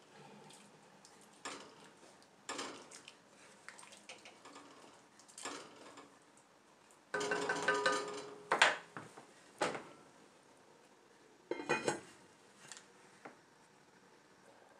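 A wooden spoon stirring thick chili in an enameled cast-iron Dutch oven, knocking against the pot now and then. Later come a few louder clanks with a short ring, as the heavy lid is handled and set on the pot.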